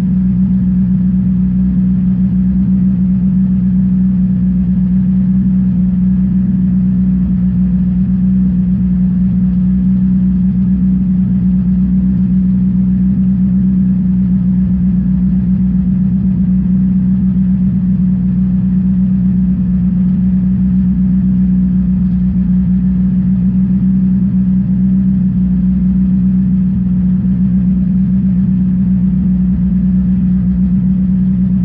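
Modified VW EA888 2.0-litre turbocharged four-cylinder of the Bonneville Jetta race car idling steadily with the car standing still, heard from inside its stripped, roll-caged cabin as a loud, constant low hum.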